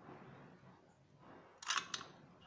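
Faint handling noise, then a quick cluster of short, sharp clicks near the end from a hand-held murukku press being worked to squeeze dough out onto a plastic sheet.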